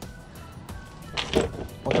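Hand tools being handled on a table while searching through them: a quiet stretch, then one short knock and clatter of tools a little past a second in.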